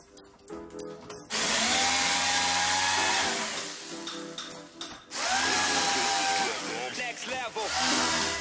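Electric jigsaw cutting a thin wooden board in two runs of about two seconds each, its motor whine rising as each run starts. Background music plays underneath.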